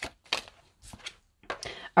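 A deck of tarot cards being handled and shuffled by hand, heard as a few separate short, sharp clicks of the cards.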